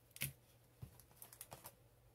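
Faint light taps and clicks of sealed baseball card packs being set down onto stacks on a tabletop, the clearest one just after the start, then a few smaller ticks.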